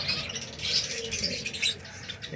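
A colony of Java sparrows in an aviary chirping and twittering, a busy overlapping high-pitched chatter, with a couple of short clicks near the end.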